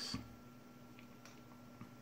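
Near silence: quiet room tone with a faint steady hum and a few faint ticks.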